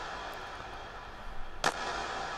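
Sampled hand clap drenched in long reverb, played on its own: one clap's airy tail dies away, then another clap hits near the end and spreads into the same long reverb wash.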